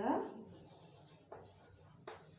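Chalk scratching faintly on a chalkboard as words are written, with a small tap of the chalk about a second and a half in. A woman's spoken word trails off at the very start.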